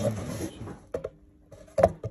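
Handling noise at the start, a light click about a second in, and a short, sharp knock near the end.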